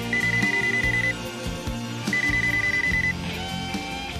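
Mobile phone ringing: a high, rapidly trilled electronic beep about a second long, sounding twice with a one-second gap, over background music with guitar.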